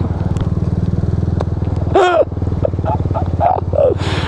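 GY6 scooter's single-cylinder four-stroke engine running with a rapid, even pulse, heard from the rider's seat.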